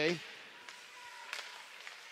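Quiet ice-hockey rink ambience: a low, even arena background with a few faint clicks from sticks and skates on the ice.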